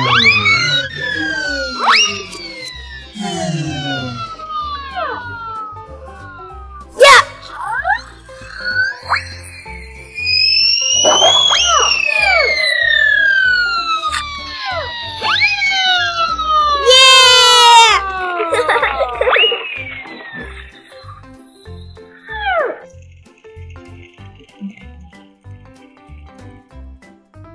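Cartoon whistle sound effects over children's background music: a string of falling whistles, a sharp crack at about seven seconds, one long whistle that rises and then slides down from about ten seconds, and a fast-warbling high tone near seventeen seconds.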